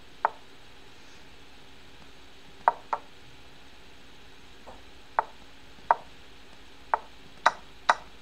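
Chess.com's wooden piece-move sound effect, a short sharp knock heard about nine times at irregular intervals, some in quick pairs, as moves are played rapidly in a time scramble.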